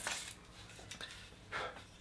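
Carving knife cutting into cottonwood bark: one short scraping slice about a second and a half in, amid faint room quiet.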